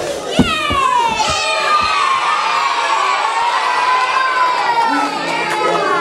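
A theatre audience of children shouting and cheering, many high voices overlapping, after a couple of knocks at the start.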